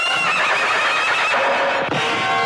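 A horse whinnying: a high, wavering call over about the first second, followed by steady held notes of film music.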